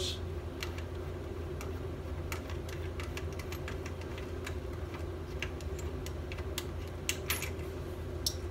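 Scattered light clicks and taps of hands unhooking rings from a CO2 laser's metal cutting head and handling its parts, over a steady low hum.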